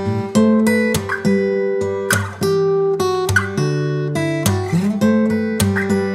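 Background music: an acoustic guitar strumming and picking a run of chords, each chord ringing out and decaying before the next.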